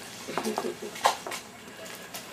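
Light clicking and clatter of a folding fan's slats being handled, a few sharp clicks with the strongest about a second in, with a faint voice underneath.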